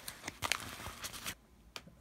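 A yellow bubble-lined paper mailer being torn open by hand: a few short rips and crinkles, strongest about half a second in, then quieter handling with one small click near the end.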